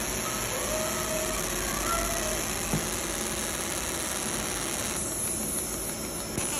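Laser marking machine running while it engraves an image into a steel plate: a steady hiss and hum with much high-pitched hiss, and one short click a little before halfway.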